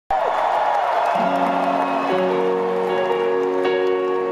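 Stadium crowd cheering, then slow sustained piano chords starting about a second in and changing about once a second as the crowd noise falls away under them.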